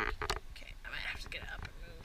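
A person whispering near the microphone, in short phrases over a steady low rumble.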